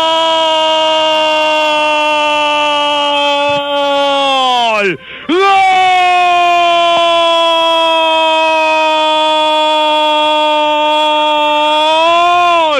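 A radio football commentator's drawn-out goal cry: one long held "gol" whose pitch sags slowly. About five seconds in it breaks for a quick breath, then the cry is held again, steady, for about seven more seconds.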